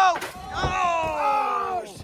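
A man's long drawn-out shout of reaction, falling in pitch, with a brief thump just after the start.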